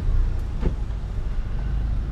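Low, steady rumble of a Chevrolet Astra hatchback's engine heard from inside the cabin as the car edges forward at walking pace.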